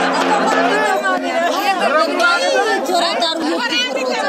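A group of people, mostly women, talking and calling out at once in lively, overlapping voices, some high and sliding in pitch. A steady held musical tone carried over from the music before it stops within the first second.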